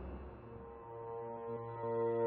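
Serge Paperface modular synthesizer playing: a noisy texture fades away, and from about half a second in a steady low drone of several held tones swells in, getting louder near the end.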